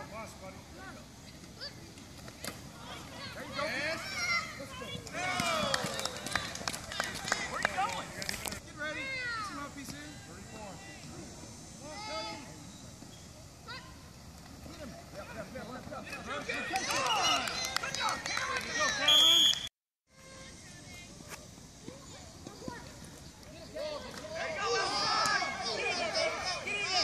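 Shouting voices of coaches, players and spectators across a youth football field during a play, rising and falling. A short shrill high tone sounds about two-thirds of the way through, just before the sound cuts out for a moment.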